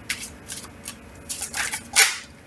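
ViceVersa Tarot cards being shuffled by hand: a string of short, quick card noises at irregular spacing, the loudest near the end.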